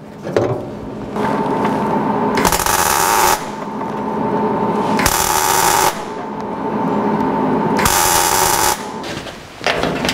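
MIG welder arc crackling as a steel pedal bracket is welded in, starting about a second in. It has three louder stretches and stops shortly before the end.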